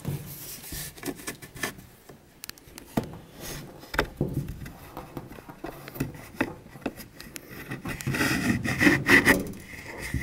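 Handling noise: rubbing and scraping with scattered light clicks and knocks, a sharper knock about three and four seconds in, as a cabinet door is worked by hand and the camera is moved close to the shelves.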